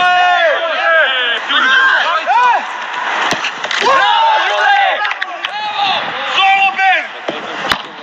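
Men shouting and calling out to each other on a football training pitch, in loud, high-pitched bursts. Two sharp knocks cut through, about three seconds in and near the end: a football being struck.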